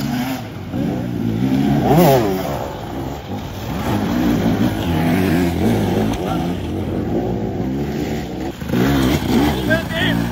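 Enduro dirt bike engines revving up and down in repeated throttle bursts as riders climb a rocky, muddy forest section, with a sharp rev rising and falling about two seconds in.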